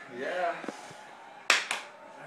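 Two sharp hand claps in quick succession, about a fifth of a second apart, near the end; they are the loudest sound here.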